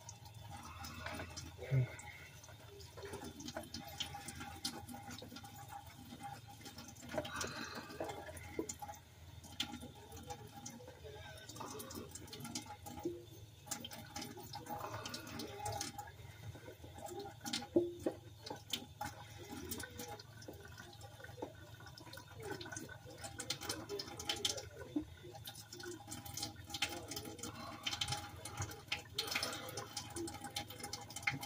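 Dishes being washed by hand at a kitchen sink: water running and splashing, with frequent short clinks of dishes and utensils.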